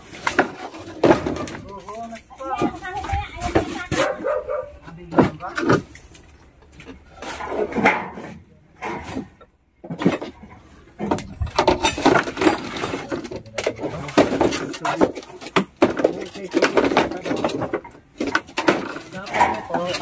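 Wooden planks and clutter knocking and clattering as they are lifted and shifted by hand, with people's voices talking over it.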